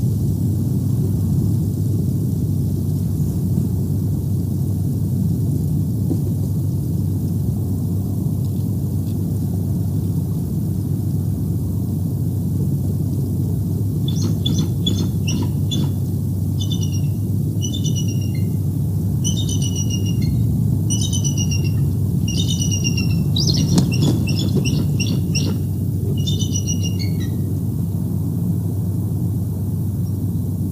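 A bald eagle calling: a run of high, chattering, piping notes, most sliding downward in pitch, that starts about halfway through and lasts some thirteen seconds over a steady low rumble.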